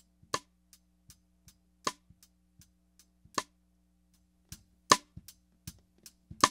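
Snare drum played cross-stick, heard through a soloed Shure SM57 snare-top microphone: four sharp, mid-rangey rim clicks about a second and a half apart, with faint lighter ticks between them. The track carries a little brightening EQ and compression but is otherwise a natural sound.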